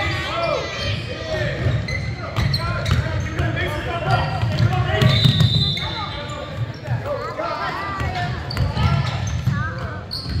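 Basketball being dribbled on a gym's wooden floor, the bounces echoing in the large hall, under shouts from players and spectators.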